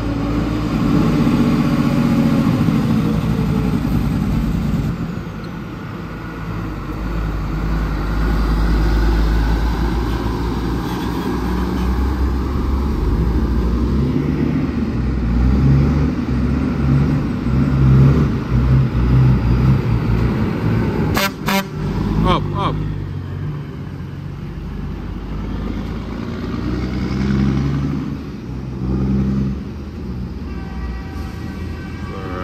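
Heavy diesel trucks running as they pass close by, their engine rumble swelling and easing. Indistinct voices can be heard nearby, and a few sharp clacks come about 21 seconds in.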